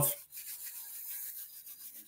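Faint rubbing noise over a video-call microphone, cutting off suddenly at the very end.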